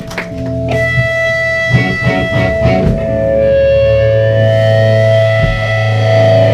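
Amplified electric guitars ringing out long, sustained notes over a steady low note as a live rock song begins.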